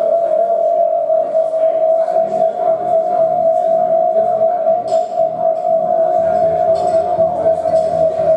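Electric guitar played through effects pedals: one high note held steady and unbroken, with quieter played notes underneath. Lower notes join in about six seconds in.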